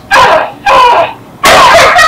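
Short, loud yelping cries from a voice, one every half second or so, then running into a longer unbroken cry near the end.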